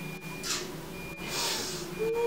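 A person breathing, two quick breaths: a short one about half a second in and a longer one near the end.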